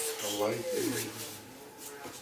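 Clothing rustling as two people hug and pull apart, a nylon puffer jacket rubbing against a sweatshirt. In the first second there is a short wordless vocal sound that bends in pitch.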